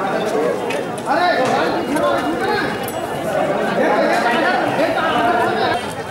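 Indistinct chatter: several people talking at once, with no single clear voice.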